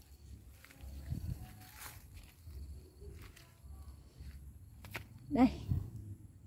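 Faint rustling and handling noises among leaves and dry leaf litter, with a few light clicks and one sharp click near the end.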